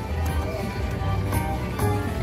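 Slot machine game audio as the reels spin: electronic spin music over a steady low bass, with two sharp hits in the second half as symbols land.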